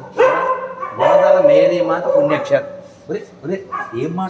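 A man talking in a raised voice, with a long drawn-out stretch in the first half, then shorter bursts of talk.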